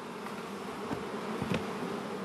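Honeybees buzzing steadily around an open beehive as it is worked with a smoker.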